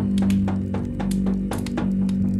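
Frame drum held against the chest and tapped with the fingers in a quick, slightly uneven patter of about five or six taps a second, over a steady low drone.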